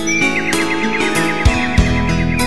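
Instrumental karaoke backing track of a ballad, with a steady drum beat and sustained chords, and a high twittering trill in the first second or so.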